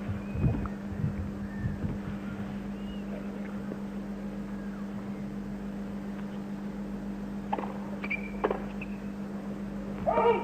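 Tennis ball struck twice about a second apart near the end: a serve and the return. Beneath it are a faint crowd murmur and a steady low hum on the old broadcast audio.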